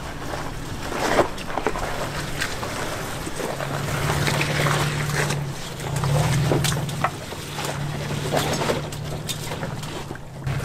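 Toyota Tacoma V6 engine running at low revs as the pickup crawls over a rocky trail, getting louder about four seconds in, with tyres crunching and knocking over rocks and gravel.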